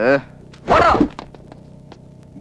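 Film dialogue: the end of a spoken phrase, then one short spoken word just under a second in, over a low steady background hum.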